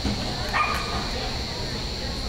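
A dog giving a single short, high-pitched bark about half a second in, over a steady background hum.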